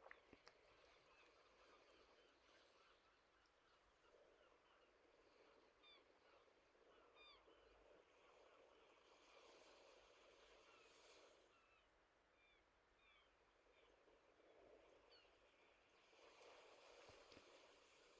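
Near silence: faint room tone with many small, scattered bird chirps in the distance.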